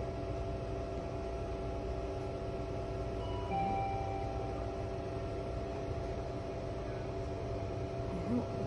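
Steady background hum made of several held tones, with a brief high beep-like tone about three and a half seconds in.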